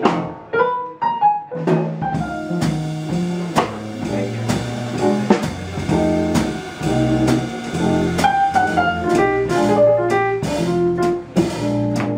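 Live jazz piano trio: acoustic piano, plucked upright double bass and drum kit with ride cymbals playing together. The piano is nearly alone for the first couple of seconds, then bass and drums come in and the trio swings on.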